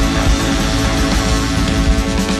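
Live rock-and-roll band playing an instrumental passage with no vocals: drum kit, electric guitar and keyboards, with a horn section on stage.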